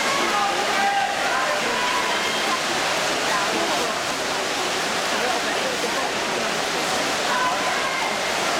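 Steady wash of noise in a large indoor pool hall during a race: swimmers splashing through butterfly strokes, mixed with the indistinct voices of spectators.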